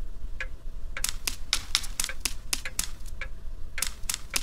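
A quick, uneven run of light clicks or taps, sparse in the first second and then about four a second: a cartoon sound effect.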